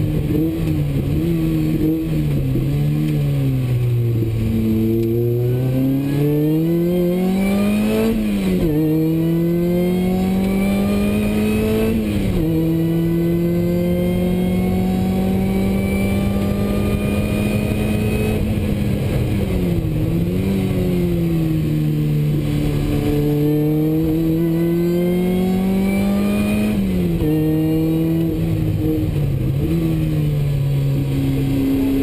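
Supercharged Opel Speedster engine heard from inside the cabin under hard acceleration: the revs climb and drop sharply at each gear change, with a long steady stretch at high revs in the middle.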